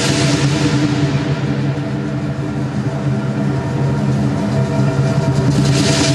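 Lion dance percussion (drum, gong and cymbals) playing as one continuous, steady wash of sound with no separate beats standing out, the gong and cymbals ringing on together.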